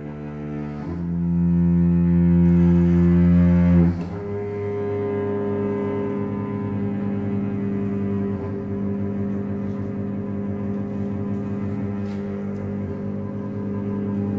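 Microtonal contemporary chamber music on low bowed strings, cello and double bass, holding long sustained notes. A loud low chord swells in about a second in and breaks off abruptly at about four seconds. A softer held chord then carries on steadily.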